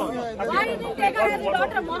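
Several people talking over one another in a heated open-air discussion; overlapping voices, no other distinct sound.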